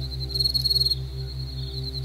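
Soft ambient music drone with held tones and a steady low pulse, under a high, thin insect trill like a cricket's. The trill swells into a rapid burst of chirps about half a second in.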